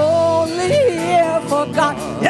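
Live song with a solo singer holding a long note with vibrato, with a quick ornamental rise and fall in pitch midway, over piano and band accompaniment.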